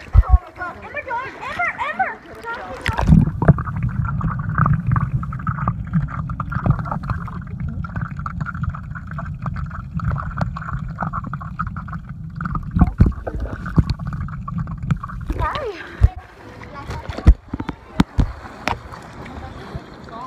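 Swimming-pool water heard through a phone in a waterproof case. It begins with muffled voices above the surface, then about three seconds in the phone goes under and a dense, muffled underwater rumble of moving water takes over. Near the end that gives way to splashes and knocks as the phone comes back up.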